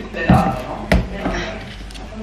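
Two sharp knocks of objects being put down or picked up on a tabletop, about half a second apart, the second the louder, with some low talk.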